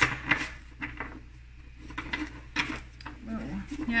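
Tarot cards being handled and drawn from the deck: a handful of sharp card snaps and clicks. A woman murmurs softly near the end.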